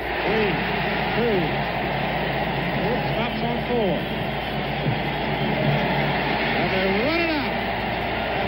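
Arena crowd cheering steadily as the game clock runs out, with single shouts and whoops rising and falling above the din. A low hum from the old broadcast audio runs underneath.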